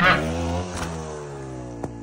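Trials motorcycle engine revved once, its pitch jumping up at the start and then falling away slowly as the revs drop, fading over about two seconds.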